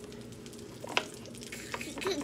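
Sausages frying in a pan on an electric stove, giving a low, steady sizzle. A single sharp click comes about a second in.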